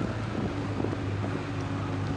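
Wind buffeting the microphone of a camera carried at a run, over a steady low hum.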